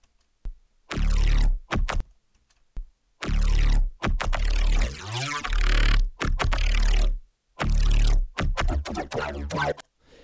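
Synthesized neuro bass line loop playing in chopped stabs with short gaps, a heavy sub and sweeping modulation, its multiband compressor switched off. A shrill texture comes and goes in the upper mids with the modulation, which the producer finds unpleasant.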